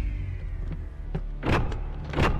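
Sci-fi sound effects of a giant robot's arm cannon powered up: a steady low hum with a motor-like whirr and a faint falling whine at the start. A sharp mechanical swish comes about one and a half seconds in.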